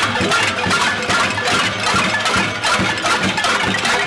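Music mixed with a dense, irregular clatter of metal cooking pots being beaten with spoons by a protest crowd.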